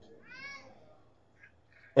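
A short, faint, high-pitched call about half a second in, rising and then falling in pitch, shaped like a cat's meow, followed by a couple of fainter short sounds.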